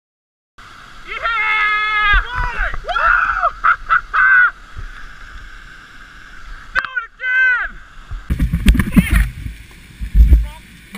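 Kayakers whooping and yelling in long, high-pitched cheers over the rush of whitewater, with a burst of low rumbling water and wind noise on the microphone near the end.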